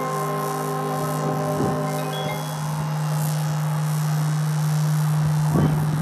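High school marching band and front ensemble holding a soft sustained chord. The upper notes fade away about two and a half seconds in, leaving a single low note held, with a few light percussion strokes.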